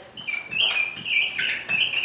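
Dry-erase marker squeaking on a whiteboard while a word is written: a quick series of short, high squeaks, each stroke at a slightly different pitch.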